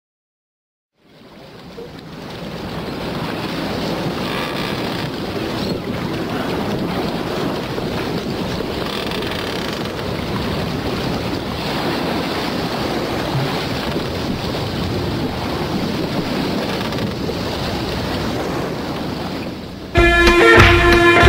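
Steady rushing of wind and sea surf, fading in from silence about a second in and then holding even.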